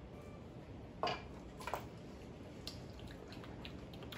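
Small plastic tasting cups being sipped from and handled on a wooden table, with two short sounds about a second in and just under two seconds in, then a few faint ticks.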